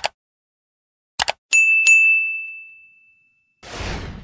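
Subscribe-button animation sound effects: a short double mouse click at the start and again about a second in, then a bright bell ding struck twice in quick succession that rings out for over a second, and a whoosh near the end.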